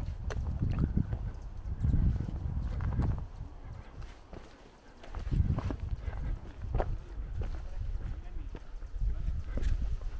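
Footsteps on a dirt trail, a person walking steadily downhill, with low gusts of wind rumbling on the microphone.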